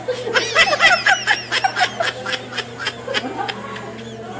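Women laughing, a quick run of short chuckles and giggles.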